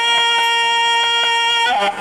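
Devotional song: a singer holds one long, steady note, then moves into ornamented, wavering phrases near the end.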